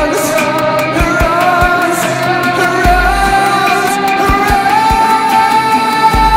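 A band playing a slow rock ballad, with a male voice holding one long high note that slowly rises in pitch and then holds, over guitar, bass and a drum beat.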